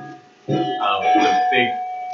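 A voice together with music, over a steady held note; the sound drops out briefly about half a second in.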